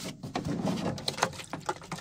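Handling noise of a plastic gallon water jug being lifted out of a fridge's wire basket: irregular rustling and a few light knocks of plastic against the basket.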